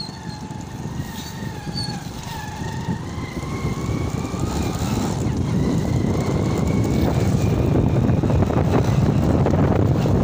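A motorcycle engine running while riding, with a faint whine that rises slowly. Wind rushing on the microphone grows louder from about three seconds in as the bike picks up speed.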